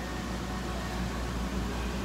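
Steady low hum with an even hiss: the running background noise of a store's aquarium racks and ventilation.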